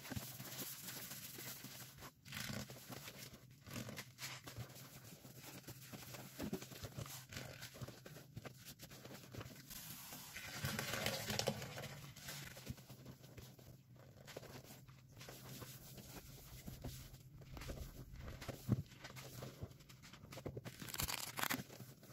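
Faint wet squishing and small crackles of a sudsy sponge being worked, over a low steady hum.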